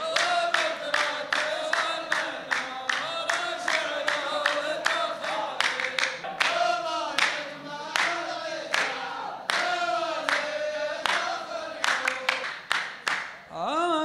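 A row of men chanting a poet's verse in unison to a shaylah tune, with rhythmic hand claps at about three a second. The clapping stops shortly before the end.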